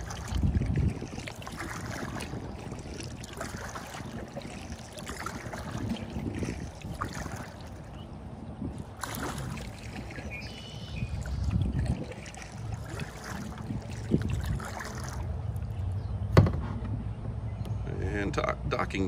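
A kayak being paddled on calm lake water: uneven paddle strokes and water moving along the hull, with some wind on the microphone. One sharp knock near the end.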